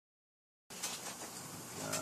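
Silence for the first moment, then background room noise with a faint steady low hum and a few short clicks, and a voice beginning near the end.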